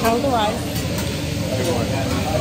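Food sizzling on a hibachi griddle, a steady hiss, with a voice over it at the start.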